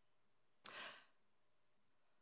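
A man's single short breath drawn in, about two-thirds of a second in, in otherwise near silence.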